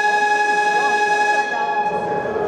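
Basketball arena scoreboard horn sounding one long, steady buzzer tone, marking the end of a timeout. It drops in level about one and a half seconds in.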